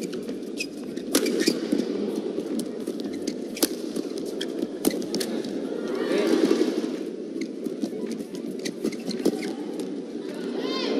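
Badminton play in an indoor arena: sharp shuttlecock strikes off rackets and shoes squeaking on the court, over steady crowd noise that swells about six seconds in.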